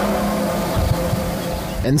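A distant, steady humming drone with a few held tones over a rushing hiss. It is one of the unexplained 'strange sounds in the sky', a grinding, humming, metal-on-metal noise, here heard from far away.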